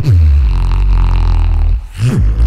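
Beatboxer's deep vocal bass into a close-held microphone: a quick downward slide into a low, steady bass drone held for nearly two seconds, cutting off shortly before the end.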